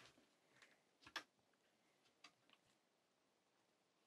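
Near silence, with a few faint clicks of fingers working at the bottom cover of a mini PC case, the clearest about a second in.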